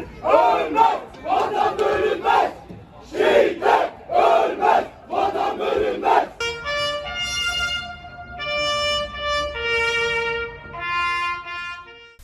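A stadium crowd chanting in unison, in short repeated shouts, for about the first six seconds. Then a trumpet plays a slow melody of long held notes.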